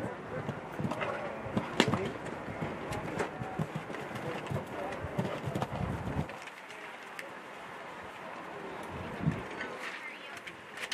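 Show-jumping horse cantering on grass, its hoofbeats thudding in a quick rhythm, with a sharper impact just under two seconds in. The hoofbeats grow fainter after about six seconds.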